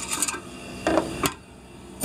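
Hand reaching into a coin-counting machine's reject tray: coins and the metal tray clinking and scraping in a few short clatters, the loudest about a second in.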